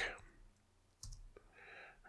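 Two sharp clicks from a computer's input, about a second in and a few tenths of a second apart, followed by a faint hiss near the end.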